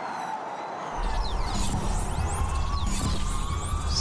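Formula E race cars passing, their electric-motor whines sweeping steeply up and down in pitch over a deep rumble that comes in suddenly about a second in.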